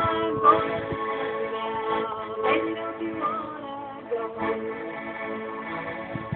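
Piano accordion playing sustained chords and melody, with brief wordless notes from a woman's singing voice near the start and about midway.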